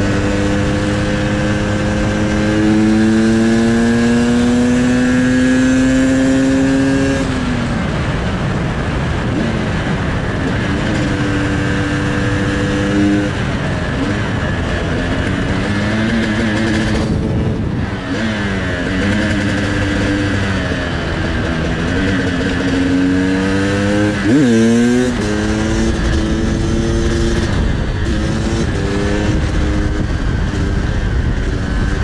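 Sherco 300 two-stroke supermoto engine under way at speed. Its pitch climbs over the first several seconds as it accelerates, then drops and wavers with the throttle, with a quick rev up and back down about 24 seconds in. Heavy wind noise on the camera microphone runs underneath.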